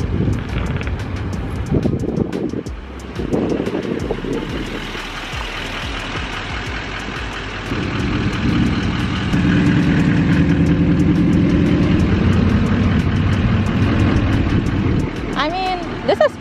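A motor vehicle's engine running close by: a steady low drone that comes in about eight seconds in and is the loudest sound until near the end, over general road noise.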